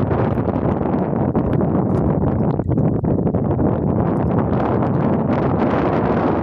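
Wind rumbling on the microphone, with frequent small knocks and rustles from a fishing net and its catch being handled in a small boat.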